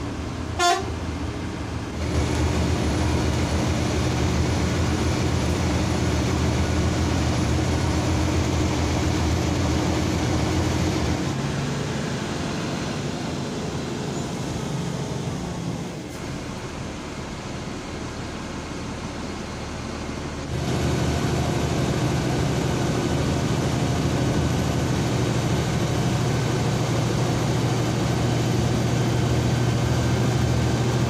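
Bharat Benz bus's diesel engine droning steadily, heard from inside the cabin, with a short horn toot just under a second in. The drone drops while the bus slows through a toll plaza and comes back stronger about twenty seconds in as the bus runs on the highway.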